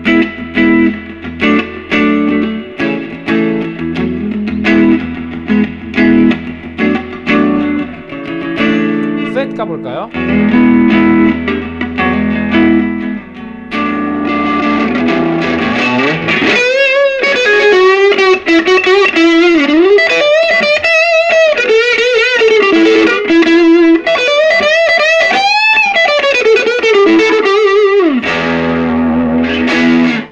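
Electric guitar with single-coil pickups played through a Fender Blues Junior III tube combo amp with a Jensen P12Q speaker: chord riffs for about the first half, then a lead line with bends and wide vibrato from about sixteen seconds in. Near the end the amp is at its maximum gain, with the preamp volume all the way up and the master low and the fat switch off, giving only a modest overdrive.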